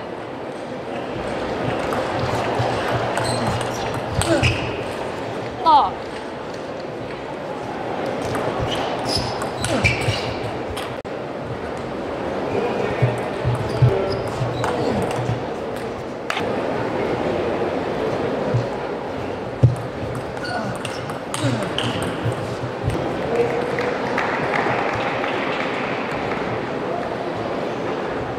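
Table tennis rallies: a celluloid-type ball clicking sharply off rubber bats and the table in quick exchanges, over the steady chatter and occasional shouts of an arena crowd.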